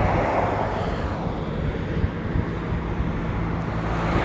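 Roadside traffic noise: a steady low engine hum under the rush of a passing vehicle, loudest in about the first second.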